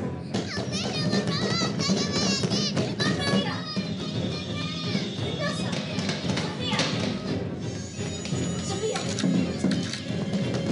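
Horror-film soundtrack: a dense, continuous music score mixed with many high, wavering children's voices.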